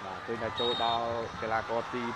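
Excited football commentary: a commentator calling the play in quick speech with long, drawn-out exclamations.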